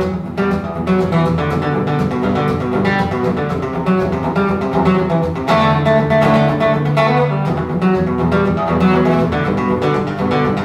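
Steel-string acoustic guitar played solo, a fast, busy picked and strummed instrumental passage with no singing.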